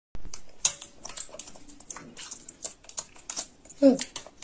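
A macaque eating with a metal spoon from a ceramic bowl: a steady scatter of small sharp clicks and taps of the spoon in the bowl, with wet mouth smacks of chewing. Near the end comes a short voiced 'mm', the loudest sound.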